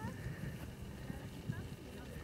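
Wind buffeting the microphone in irregular low rumbles, with faint voices in the background.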